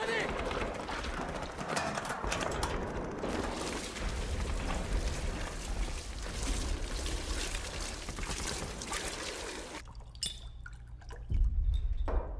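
Petrol splashing out of jerrycans onto a body and the muddy ground, over a dense din. The din quiets about ten seconds in, and a heavy low thud comes near the end.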